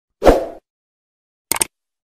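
Subscribe-button animation sound effects: a pop as the button appears about a quarter second in, then a quick double mouse click near the end.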